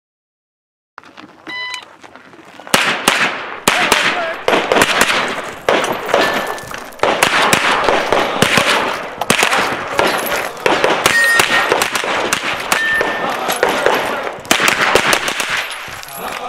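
A shot timer beeps once, and about a second later a Sig MPX pistol-caliber carbine fires repeatedly in quick strings of shots with brief pauses between them, as the shooter works through a USPSA stage.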